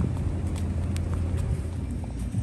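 Outdoor background noise: a steady low rumble of wind on the phone microphone, with a few faint ticks.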